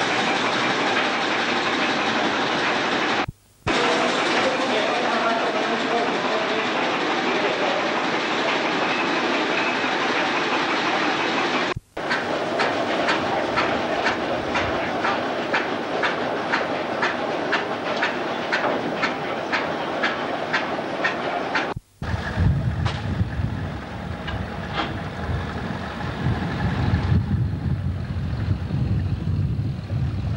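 Old belt-driven machinery running with a steady mechanical din, which turns into a regular clatter of about three clicks a second partway through and then into a lower rumble; the sound drops out briefly three times where the footage cuts.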